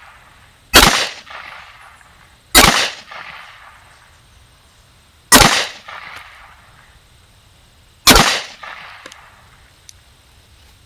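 .380 ACP semi-automatic pistol fired four times, one round every two to three seconds, each shot trailing off in a short echo.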